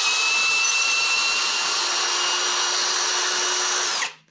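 Parkside Performance PSBSAP 20-Li A1 brushless cordless drill-driver running in reverse to back a 16 cm carpenter's screw out of a hardwood beam. It gives a steady, even motor whine, rising slightly in pitch, that stops just before the end.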